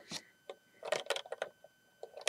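Light clicks and clatter of LEGO plastic parts being handled as a minifigure is seated in a brick-built cockpit and pressed into place: a couple of single clicks, then a quick cluster of clicks about a second in.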